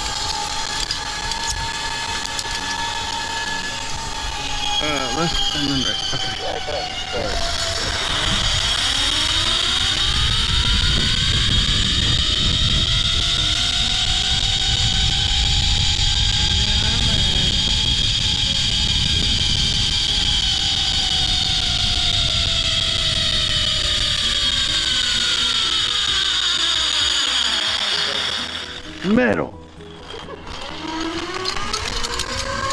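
Zipline trolley pulleys rolling along a steel cable: a metallic whine that rises in pitch as the rider gathers speed and falls as the trolley slows, over a rush of wind on the microphone. Near the end comes a brief loud clatter as the trolley arrives at the landing platform.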